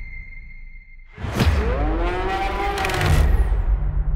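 Cinematic trailer sound design. A faint high ringing tone fades out over the first second. About a second in comes a sudden whoosh and boom, then a long, low, bellow-like call that rises and then sags, over a deep rumbling drone.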